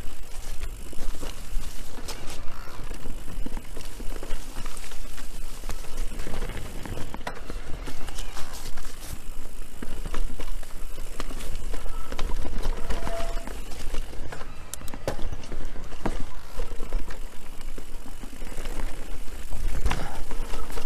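Electric mountain bike ridden fast along a dirt singletrack: continuous tyre noise and a low rumble, with frequent short rattles and clicks as the bike goes over bumps.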